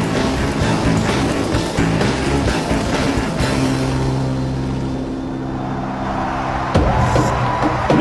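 Film soundtrack: busy action sound effects over music for the first few seconds, then a held low musical drone, broken off by a sudden hit near the end.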